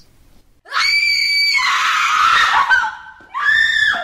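A woman screaming: one long, high-pitched scream held for about two seconds, then a second, shorter scream near the end.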